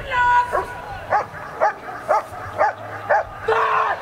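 German Shepherd barking at the protection helper in a steady series, about two barks a second, with a longer call at the start and another near the end.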